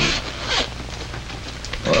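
A pause in dialogue on an old 16mm film soundtrack: steady hiss over a low hum, with one brief faint sound about half a second in. A man starts to speak right at the end.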